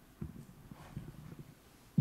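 Footsteps of a person walking across a hard floor: a run of soft, uneven thuds, then a sharper knock at the very end.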